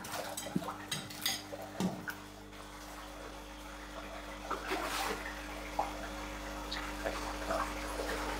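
Feed thrown into a large aquarium, with arowanas and big cichlids splashing at the water surface as they snap it up. There are a few small splashes and knocks in the first two seconds and a noisier stretch of splashing near the middle, over a steady low hum.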